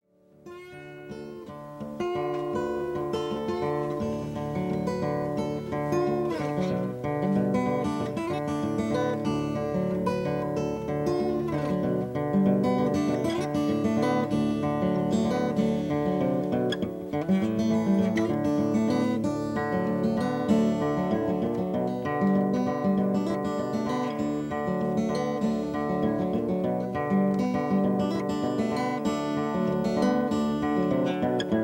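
Solo acoustic steel-string guitar, fingerpicked: bass notes under a melody line in a steady folk-blues picking pattern, fading in over the first two seconds.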